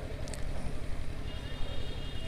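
A pause with no speech: a low, steady rumble of background noise picked up by the stage microphones. A faint high tone comes in halfway through.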